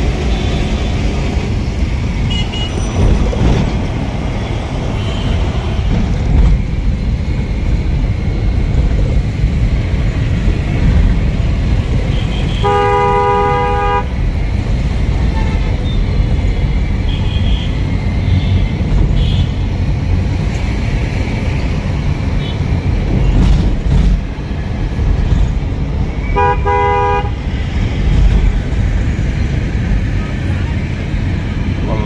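Steady engine and road rumble heard from inside a moving vehicle in city traffic, with a vehicle horn blown twice: a blast of about a second and a half a little before halfway, and a shorter one near the end.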